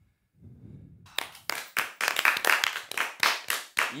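Several people clapping by hand, starting about a second in and quickly building to loud, steady applause.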